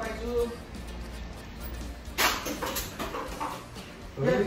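Indistinct voices of several men roughhousing in a room over background music, with a sudden loud shout or yelp about two seconds in.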